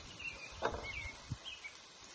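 Faint bird chirps over quiet outdoor background noise, with one light click about two-thirds of a second in.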